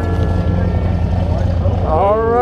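A light propeller airplane's piston engine running steadily nearby, a continuous low rumble.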